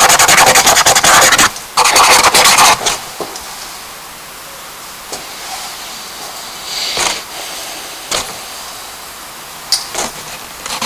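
A hand rubbing rapidly across a charcoal drawing on a paper sketchbook page, blending the charcoal: two loud bursts of fast scrubbing in the first three seconds, then only a few faint brief scrapes.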